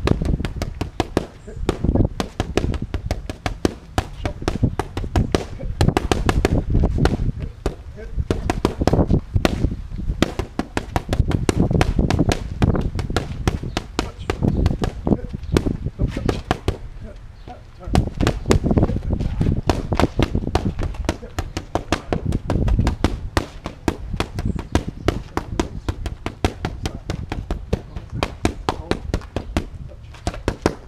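Boxing gloves striking leather focus mitts in fast combinations: a stream of sharp slaps, several a second, with brief lulls between flurries.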